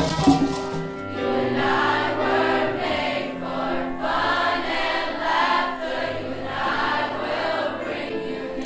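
A choir singing in long phrases over steady low held notes. Hand-drum strikes die away in the first second.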